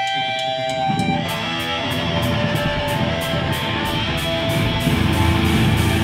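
Hardcore punk band playing live, opening a song: ringing electric guitar notes, then strummed distorted guitar chords over drums striking an even beat of about three strokes a second, building toward the full song.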